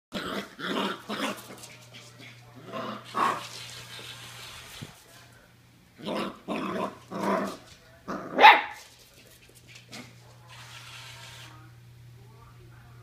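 Norwich terrier puppy barking and growling in short bursts, about ten in all, in several quick groups, the loudest about eight and a half seconds in.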